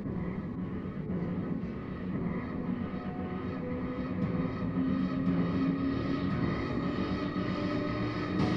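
Low, steady droning rumble from a film soundtrack played through a TV's speakers, growing slowly louder.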